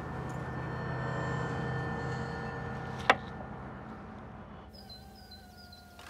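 A steady low background hum, with one sharp click about three seconds in. Near the end it gives way to quieter outdoor ambience with birds chirping.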